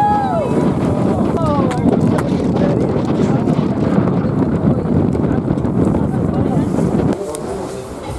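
Steady wind buffeting the microphone over a moving boat's engine and water noise. A few long, sliding voice calls rise and fall in the first two seconds. The noise drops sharply about seven seconds in.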